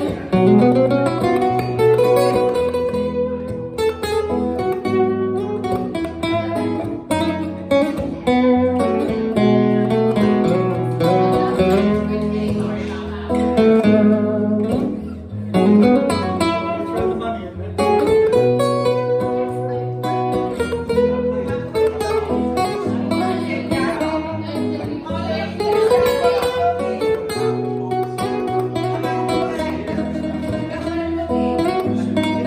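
A jumbo acoustic guitar played solo, a continuous run of plucked notes over a repeating bass line.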